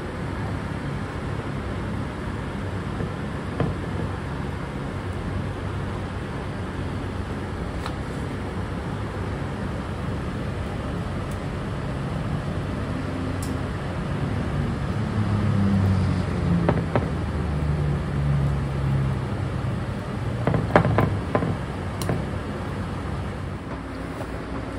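A steady low background hum with a few light clicks and taps of a table knife slicing butter pats onto a glass baking dish, a quick cluster of them near the end.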